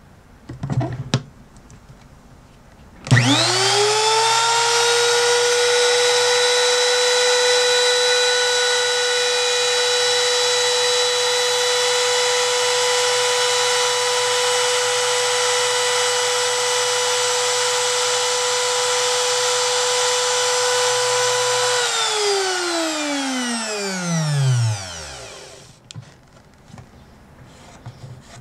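A Bosch trim router routing the saddle slot in an acoustic guitar's bridge. A few light handling knocks come about a second in. The motor then starts and spins up within a second to a loud, steady high whine, and runs evenly for about twenty seconds. Near the end it is switched off and its whine falls in pitch as it spins down over about three seconds.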